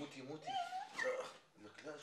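A person whimpering in short, wavering whines that rise and fall in pitch.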